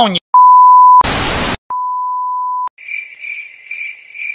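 A censor bleep cuts off a shouted insult: a steady beep, then a burst of static hiss, then a second beep. After that comes a high, even chirping, about three chirps a second, like crickets in an awkward silence.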